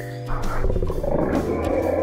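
A growling roar sound effect: a loud, rough growl that starts about a third of a second in and carries on, over soft background music.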